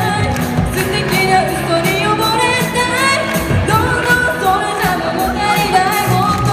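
Live rock band playing a pop-rock song: a woman singing lead over electric guitars and a drum kit with a steady beat.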